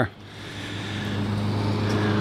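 A road vehicle's engine and tyres, a steady low hum that grows gradually louder as it approaches.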